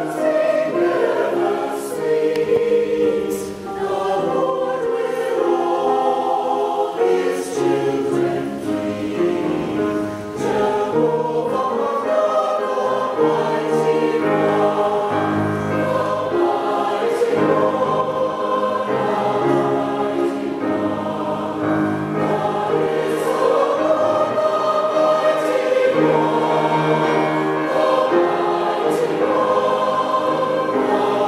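Mixed choir of men's and women's voices singing in parts, held notes moving together, with piano accompaniment.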